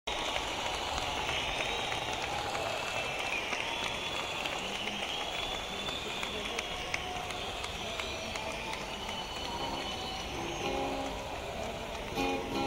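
Concert audience murmuring and calling out, with scattered claps and a few whistles, before a song. Guitar notes start being plucked near the end.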